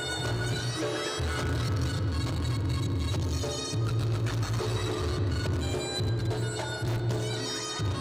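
Reog Ponorogo gamelan accompaniment: a reedy slompret shawm holding a wailing melody over a pulsing low drum and gong beat.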